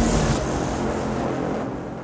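Fading tail of a TV show's electronic title jingle, a dense low wash dying away steadily.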